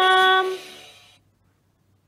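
The last held note of a cartoon song, sung on one steady pitch, ending about half a second in with a short fade, then near silence.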